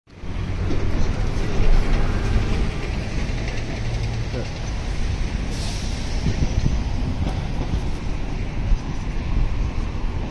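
City street traffic noise: a steady low rumble of passing vehicles, with a brief hiss a little past halfway through.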